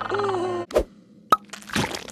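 Cartoon soundtrack: a held vocal note ends just over half a second in, followed by a dull knock, then a sharp plop, the loudest moment, and a brief hissing swish.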